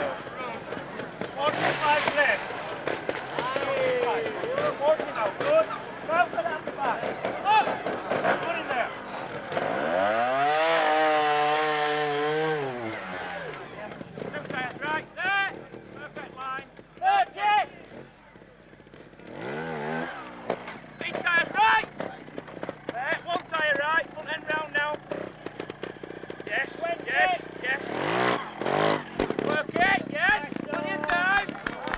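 Trials motorcycle engine revving up and falling back over about three seconds, starting about ten seconds in, with a second, shorter rev near twenty seconds, among the voices of onlookers.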